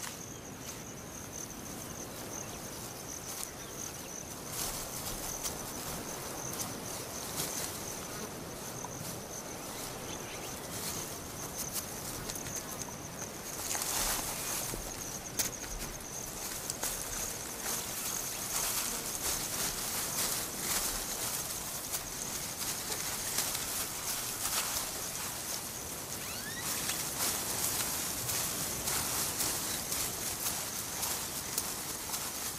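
Grassland ambience: a steady high-pitched insect trill, like crickets, over a haze of scattered rustles and clicks that gets louder about halfway through.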